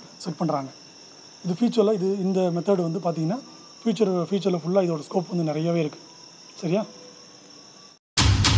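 A man talking in short phrases with pauses between them, over a faint steady high-pitched whine; the sound cuts off abruptly near the end.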